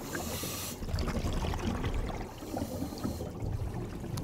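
Water sound effect: a splash near the start, then running, trickling water.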